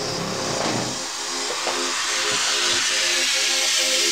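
Progressive psytrance track in a build-up with no kick drum: a noise sweep swells steadily louder over a repeating synth figure.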